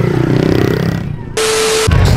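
Small pit bike engine running as it rides close past, fading out about a second in. Then a sudden half-second burst of hiss with a steady low hum, starting and stopping abruptly.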